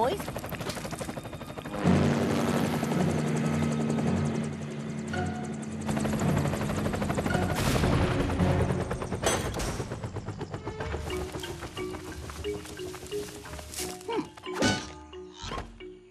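Cartoon helicopter sound effect: a rapid, steady chopping of rotor blades, with music under it. It gives way in the last few seconds to musical notes and swooping sound effects.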